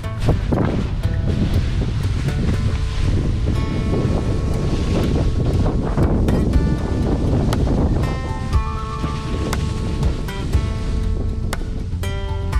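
Wind rushing over the microphone while skiing downhill under a speed-riding wing, with background music underneath. The wind eases about eight seconds in and the music comes forward.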